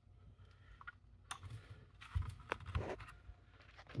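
Faint clicks and light knocks of a small metal mini-PC chassis being handled and turned over, a few scattered taps between about one and three seconds in.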